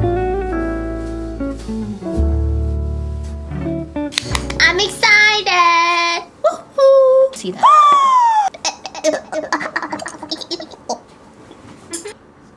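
Background music with plucked guitar for about four seconds, then a person's loud, high-pitched wordless shouts and one long rising-and-falling wail, followed by scattered quieter vocal sounds.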